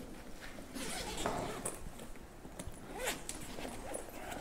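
Rustling and small knocks of someone rummaging through a bag, with a few faint, drawn-out murmurs of a voice.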